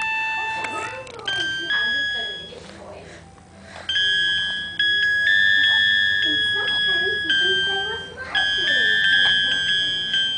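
Roll-up electronic toy piano keyboard sounding held, high electronic notes as a baby presses its keys, the note changing every second or so, with a quieter gap about three seconds in.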